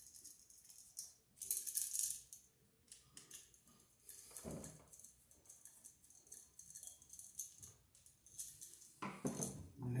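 Screwdriver working the terminal screws of a new duplex outlet: light metallic clicking and scraping in short bursts, the loudest about a second in and again about four seconds in.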